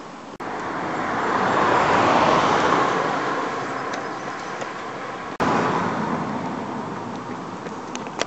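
Car traffic passing on a road: one car swells to its loudest about two seconds in and fades away. After a brief dropout about five seconds in, the tyre and engine noise starts loud again and fades.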